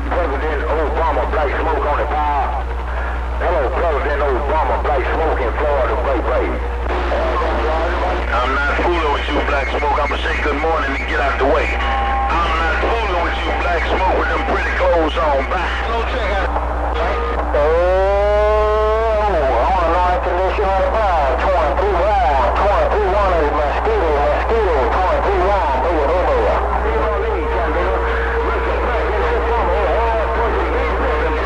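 CB radio receiver playing a crowded channel: several garbled, overlapping voices come through the speaker with steady heterodyne whistles over them. About 18 s in, a whistling tone sweeps up and back down, and a steady low hum runs under everything.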